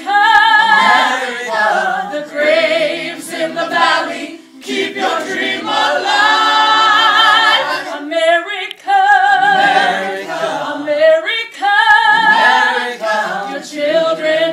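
Gospel choir singing a cappella, the voices held with a strong vibrato, in long phrases broken by brief pauses.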